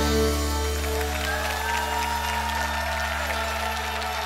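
A live band's final chord held and slowly fading at the end of a song, with audience applause starting up over it.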